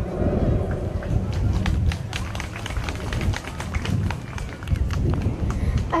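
An outdoor audience clapping, dense and irregular, over a low rumble and crowd chatter.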